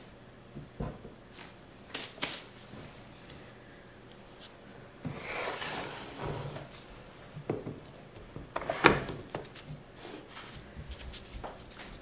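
A soap loaf being slid and set down on a wooden soap-cutting board: scattered knocks and taps, a sliding rub about five seconds in, and the sharpest knock near nine seconds as the loaf is pushed against the board's fence.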